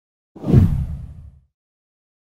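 A deep whoosh sound effect that swells quickly and fades out over about a second.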